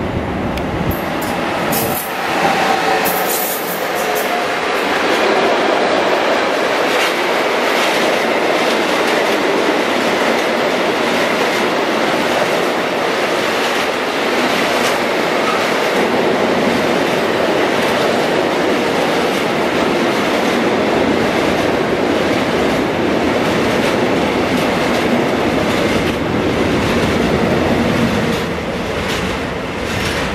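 A freight train of tank wagons, hauled by two electric locomotives, rolling past close by at speed. The wheels run loudly and steadily on the rails, with rhythmic clatter over the rail joints, and there are a few sharp high screeches as the locomotives go by near the start.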